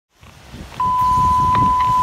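A steady single-pitched radio alert tone from a fire-department dispatch scanner, starting just under a second in, over a low background rumble of radio noise. It is the dispatcher's alert ahead of a fire box announcement.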